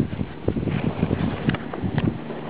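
Wind buffeting the microphone: an uneven low rumble with a couple of sharp clicks.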